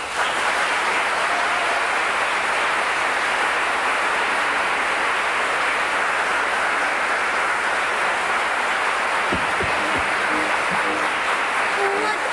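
Theatre audience applauding steadily, with a couple of dull low thumps about nine seconds in.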